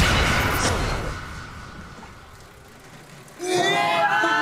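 A loud wash of noise fades away over the first second and a half, leaving a quieter stretch. About three and a half seconds in, people break into high-pitched shrieks and cheers of celebration.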